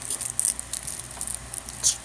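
Handling noise: an irregular run of short, soft scratches and rustles, with a slightly louder one near the end.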